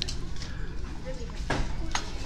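Background room noise with faint voices, and a short sharp knock about one and a half seconds in.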